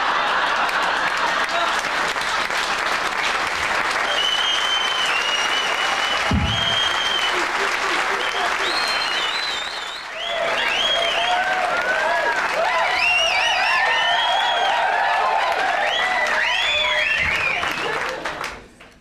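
A club audience applauding steadily. About ten seconds in, the applause breaks off briefly and a fresh round begins, with pitched sounds rising and falling over it. There is a short low thump about six seconds in.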